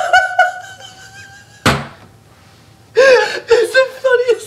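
Two men laughing hard: one held, high-pitched laugh, then a single thump a little under two seconds in, and loud bursts of laughter again near the end.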